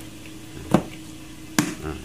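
Plastic evaporator cover inside a refrigerator's freezer being pressed home by hand, with two sharp snaps a little under a second apart as its clips catch, over a faint steady hum.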